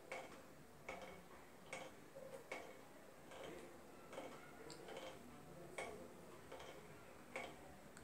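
Near silence: room tone with faint, unevenly spaced short clicks every second or so.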